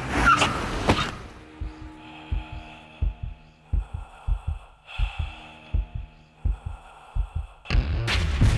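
A heartbeat sound effect: dull double thuds repeating steadily, a little faster than one a second, over a faint hum. A short loud rush of noise comes first, about half a second in.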